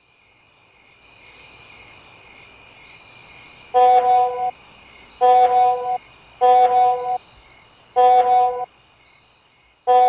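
Crickets chirping steadily at night, with a mobile phone buzzing in five evenly spaced pulses, each under a second long, starting about four seconds in.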